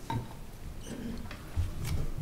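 A few faint clicks and soft knocks of equipment being handled, with a sharper click and low thumps near the end.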